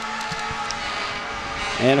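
A fire engine passing in a street parade: a steady rumble and hum with a few held tones underneath. A man's voice starts right at the end.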